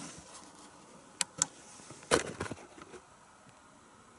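Two short sharp clicks about a second in, then a louder knock with a brief rustle around two seconds, over a faint steady hiss that is all that remains near the end.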